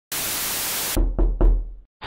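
Logo-intro sound effect: a steady hiss of noise for about a second, cut off abruptly, then three heavy knocks in quick succession with a deep low boom, fading out quickly.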